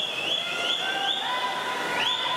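Crowd of spectators and teammates cheering and yelling at a swim race, many overlapping high-pitched sustained shouts that repeatedly rise in pitch.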